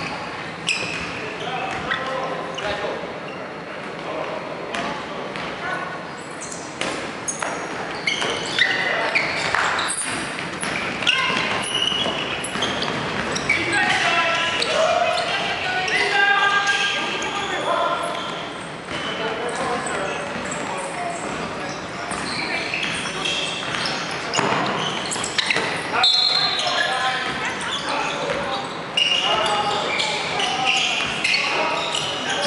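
Dodgeball game in a large sports hall: players shouting and calling to each other, with balls repeatedly hitting and bouncing on the wooden floor, echoing around the hall.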